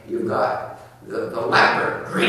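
A man's voice lecturing, in two runs of speech.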